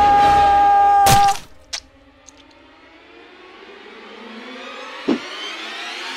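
Horror film score: a held high note ends with a sharp hit about a second in. A low, dark swell then builds slowly in loudness, with a faint thud near the end.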